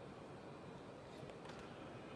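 Faint steady room noise of a large indoor space, with a faint short tap about one and a half seconds in.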